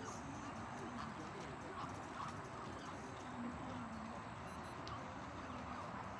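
A flock of Canada geese giving short, low calls every second or so, over steady outdoor background noise with faint voices.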